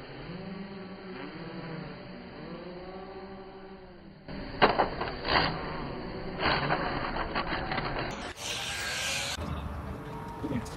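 Racer 4 racing drones' motors and propellers whining, the pitch arching up and down, then several sharp crash impacts from about four and a half seconds in. A short burst of hiss near the end.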